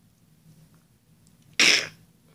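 A person coughs once, sharply and briefly, about one and a half seconds in, after faint room tone.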